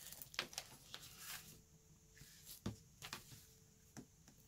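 Faint handling of paper: sticker sheets and planner pages rustling and tapping as stickers are peeled and pressed down, with a single soft knock about two-thirds of the way through.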